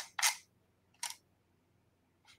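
Two short clicks from a computer mouse's scroll wheel as code is scrolled, one just after the start and one about a second in. The wheel is loud, like a cricket.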